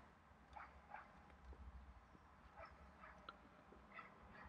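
Near silence: room tone with a few faint, short chirps scattered through it.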